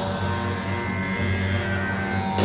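Live rock band playing a song's opening in an arena: held guitar and bass notes ring on steadily, with no drum hits yet.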